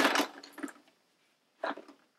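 Toys clattering as a child rummages through a clear plastic storage bin: a burst of rattling that dies away within the first second, then one short clack near the end.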